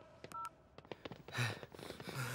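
Mobile phone keypad tone: one short two-pitch dialing beep about a third of a second in. Light clicks and a low thump follow a little after the middle.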